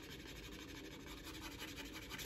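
A wooden-handled edge beveler scraping along the edge of a strip of 2–3 oz veg-tan leather, shaving off the corner: a faint, continuous fine scraping.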